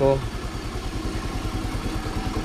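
Kymco Super 8 scooter engine idling steadily with an even low pulse, its carburetor's main and pilot jets freshly cleaned.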